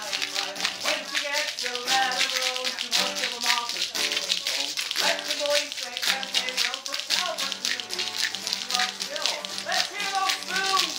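Many pairs of spoons played by hand at once, a fast, continuous clatter of clicks, over a strummed acoustic guitar and voices singing along.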